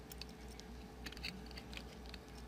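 Faint small clicks and handling noise of jumper wires being plugged into a breadboard circuit, over a low steady hum.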